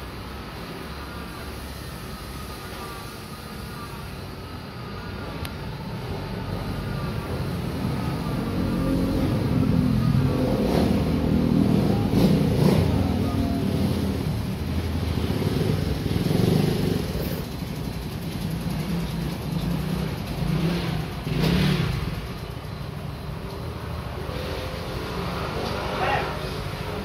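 Motor vehicle traffic: engine noise builds over several seconds, is loudest about half way through, then eases off with a few smaller swells as vehicles pass.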